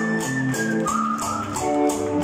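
A live band playing loudly, with sustained organ-like keyboard chords over bass guitar and a steady drum beat.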